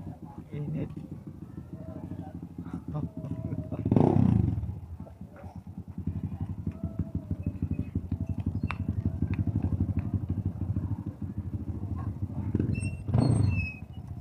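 A small motorcycle engine running nearby with a fast, even beat, swelling twice, about four seconds in and again near the end, as motorcycles pass close by.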